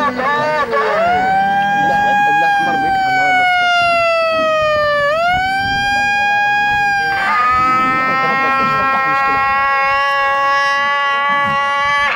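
A handheld megaphone sounding two long, held tones. The first sags slowly in pitch, scoops back up about five seconds in, and breaks off a couple of seconds later. The second holds steady to the end.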